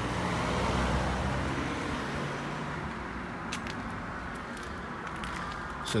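A passing car: engine and tyre noise swelling about a second in and fading away over the next few seconds, with a few light clicks near the end.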